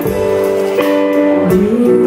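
Live band music: sustained keyboard chords changing every second or so, with drums and cymbals. A woman's singing voice comes in near the end.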